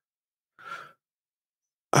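A person's single short breath, a soft sigh, about half a second in, between stretches of silence.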